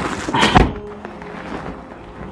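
A car's rear passenger door being pushed shut, one solid thunk about half a second in, over background music.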